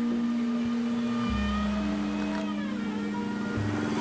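Background music of slow, held synthesizer chords that change twice, with a deep bass note sounding for about a second in the middle.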